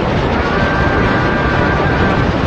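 Loud, steady hiss and rumble of noise from an old 1940s radio broadcast recording, with a faint thin tone joining about a quarter of the way in.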